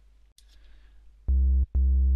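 Native Instruments Massive software synth playing two short, steady low notes about a second in. The oscillator is a sine wave with a little square wave blended in, pitched down two octaves. The pitch holds flat because the kick drum's pitch envelope has not yet been set up, so this is the raw oscillator tone.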